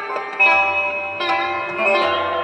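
Sarod playing a Hindustani classical raag: plucked notes struck about half a second and a little over a second in, each ringing on.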